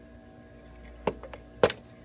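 Two sharp clicks about half a second apart, the second louder, as the push tab on the Ranger EV's front battery-pack connector releases and the plastic plug comes free.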